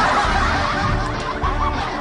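People laughing and snickering over background music.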